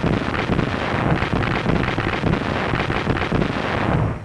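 Rocket barrage from an assault landing craft striking a beach: a loud, dense crackling roar of launches and bursts with no single blast standing out.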